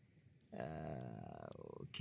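A man's drawn-out hesitation 'uhh', starting about half a second in and held at a steady pitch for about a second and a half.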